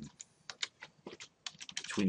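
Computer keyboard keys clicking in quick, irregular succession as a spreadsheet formula is typed.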